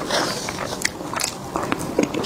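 Close-miked wet mouth sounds of someone chewing soft cream cake: irregular smacks and clicks.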